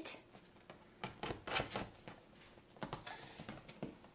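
A small dog's paws and claws tapping and scrabbling on a leather couch, a few quiet, irregular taps and rustles as she moves about.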